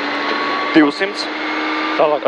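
Rally car's engine pulling hard under full acceleration, heard inside the cabin, with its pitch and loudness climbing gradually as the car gathers speed on a gravel straight.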